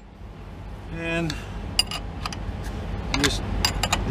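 Open-end wrench clinking against the belt tensioner bolts, a handful of short, sharp metallic clicks spread through the second half, over a steady low rumble.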